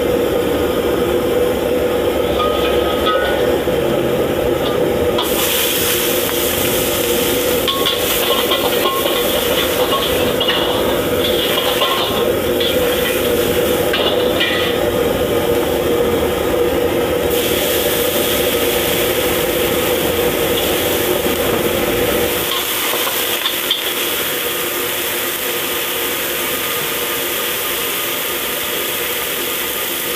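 Vegetables sizzling in hot oil and being stirred and scraped with a metal ladle in a steel wok, over the steady rumble of a gas burner. The low rumble drops away about two-thirds of the way through while the sizzling carries on.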